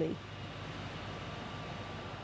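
Steady machinery noise of a power station turbine hall, an even rushing sound with a faint low hum.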